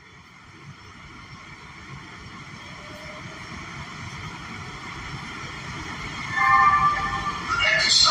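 Interior noise of a 1991 Breda A650 subway car pulling out of an underground station: low running rumble under a steady high-pitched propulsion whine. The whole grows steadily louder as the train gathers speed.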